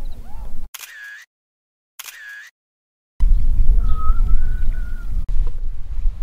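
Two camera shutter clicks about a second apart, each set in dead silence, between stretches of wind rumbling on the microphone.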